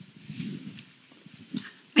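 A quiet pause with a faint, brief low rustle about half a second in, as a handheld microphone is lifted. A woman starts speaking at the very end.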